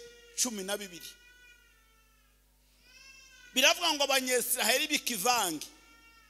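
A man preaching through a microphone and PA, his voice echoing in the hall. There is a short phrase early, then a longer drawn-out phrase with swooping pitch in the second half.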